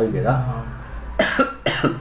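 A voice speaking briefly, then two short coughs about a second in and near the end.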